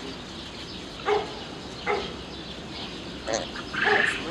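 Baby gazelles bleating: four short calls spread over a few seconds.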